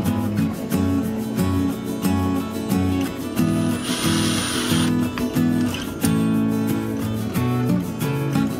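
Background music led by acoustic guitar, with a short burst of hissing noise a little past the middle.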